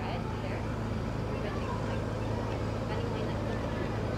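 A steady low hum under faint, distant voices.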